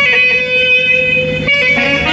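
Brass band playing: one long held wind note, with other notes entering about one and a half seconds in.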